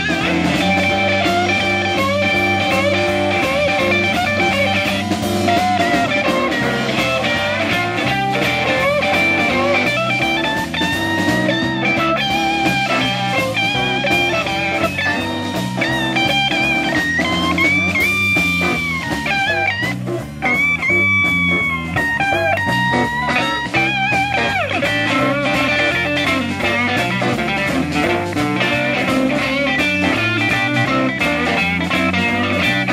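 Live blues band playing an instrumental passage: electric guitars, electric bass and drums, with saxophone in the line-up. A lead line of bent and held notes rides over the rhythm, with two longer sustained notes a little past the middle.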